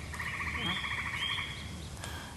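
A chorus of frogs calling in a steady, rapid trill, with two short higher chirps about halfway through.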